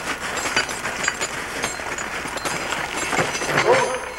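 Clinking and knocking of a logging chain (a wrapper chain) being handled on a log load, with people's voices in the background and a voice calling out near the end.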